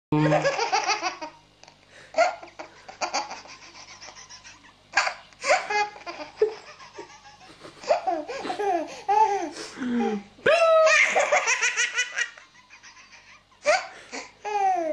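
A baby laughing hard in repeated belly-laugh bursts, some of them rapid strings of short laughs, with brief quieter pauses in between.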